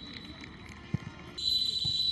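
Referee's whistle blown for half-time: one high, steady blast trails off at the start, and a second, stronger blast begins about one and a half seconds in. A single short thud comes about a second in, over faint stadium background noise.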